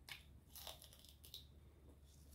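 Quiet, crisp crunches of a raw red radish and leafy greens being bitten and chewed, a few bites in the first second and a half.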